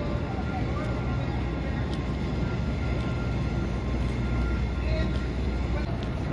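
Busy city street ambience: a steady low rumble under the scattered voices of passing crowds.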